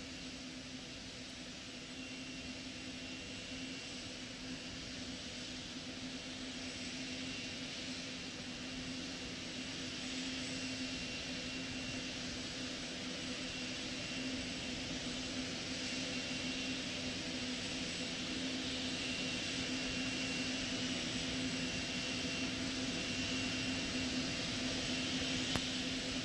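Steady launch-pad ambience: an even hiss that slowly grows louder, with a low steady hum underneath.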